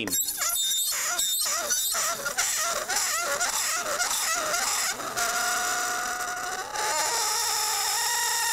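Copper pressed against a block of dry ice, screaming: a high, wavering squeal that settles into held steady tones in the second half, with a shift in pitch near the end. The warm metal makes the frozen carbon dioxide sublimate faster where they touch.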